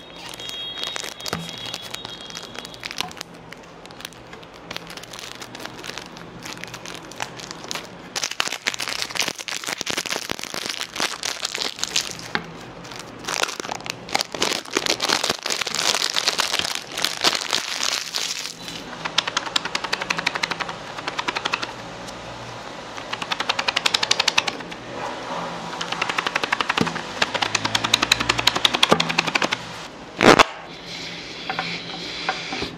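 Close-miked crinkling and crackling of the cellophane wrapper being torn and peeled off a boxed deck of playing cards, with taps and scrapes of fingers on the card box. Near the end come quick runs of clicks as the cards are handled out of the box.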